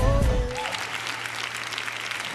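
A live gospel band and singer end a song with a held note that stops about half a second in, and the audience applauds.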